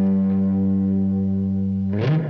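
Electric guitar holding a chord, ringing steadily, with a fresh strum struck right at the end.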